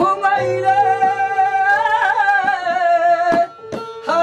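A Baul singer holding one long, wavering sung note over the steady plucked tones of a one-string ektara, with a few taps on a small hand drum in the second half; the music drops away briefly near the end.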